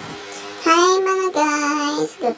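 A high voice singing two long held notes, the second a step lower, starting a little over half a second in.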